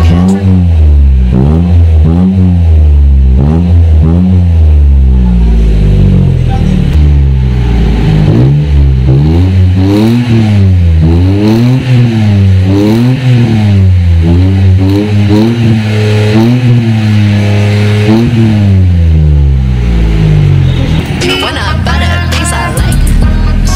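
Mitsubishi Mirage G4's three-cylinder engine revved again and again through an aftermarket K-Racing muffler. Each blip rises quickly in pitch and falls back toward idle, about once a second.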